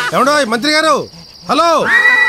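A loud pitched call repeated three times, each rising and then falling in pitch, with a short lull between the second and third. A steady high tone starts just before the end.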